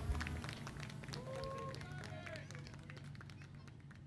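Scattered clapping and a few voices from a small audience right after a live band's song ends, fading out steadily. A low hum stops about half a second in.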